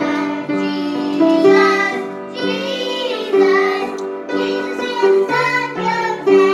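Children singing a song with grand piano accompaniment, the piano sounding steady chords under the voices.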